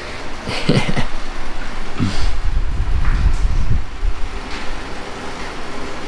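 Hands rubbing and kneading hair and scalp in a vigorous head massage, with scratchy rubbing noises and a low rumble that is loudest a couple of seconds in.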